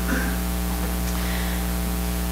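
Steady electrical mains hum with a layer of hiss, a buzz made of many evenly spaced tones that holds level and unchanging throughout.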